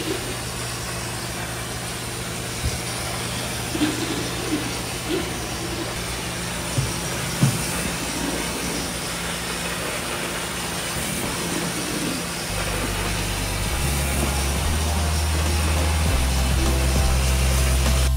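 Tile spinner extracting a terrazzo floor: a steady rushing noise with a low hum, broken by a few knocks in the first half. Background music with a bass line comes in about two-thirds of the way through.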